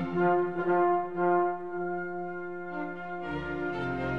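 Classical orchestral background music: a slow passage of long held notes, with deeper parts joining about three seconds in.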